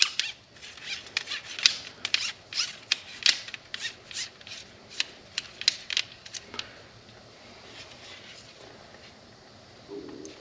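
Telescopic tenkara rod being collapsed, its sections sliding and clicking into one another: a quick run of light clicks and rubs that dies away after about six and a half seconds.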